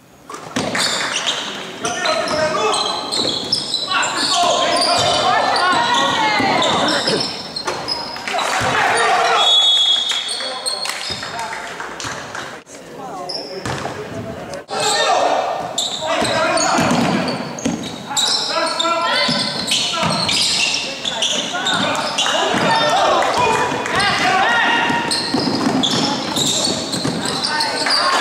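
Players' and bench voices calling out in a reverberant gymnasium, with a basketball bouncing on the hardwood court.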